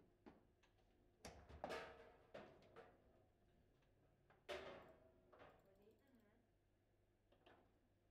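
Table football in play: a series of sharp knocks as the ball hits the plastic players and table walls and the rods clack. The loudest comes about four and a half seconds in.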